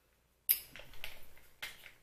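Small objects being handled close by: a sharp click about half a second in, then crackly rustling, and another click near the end.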